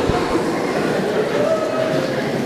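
Congregation noise: many voices at once in a dense, steady mass, with no single speaker standing out.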